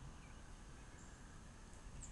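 Near silence: faint outdoor background with a low rumble and no distinct event.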